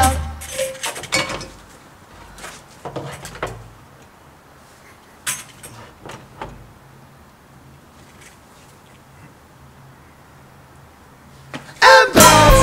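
A small rock band's song stops abruptly, leaving a pause filled only by a faint low hum and a few scattered small knocks and clicks; the full band comes back in loudly near the end.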